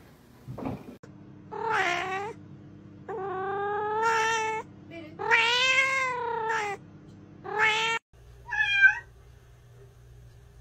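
A cat meowing four times in long, drawn-out calls that rise and fall in pitch, the longest about a second and a half. Near the end, a different cat gives one short, higher meow.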